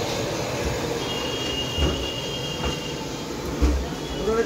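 A large metal cooking pot being carried on poles and lowered onto a wood-fire stove. A high steady squeal lasts about two seconds and a few dull thumps sound over a steady noisy din.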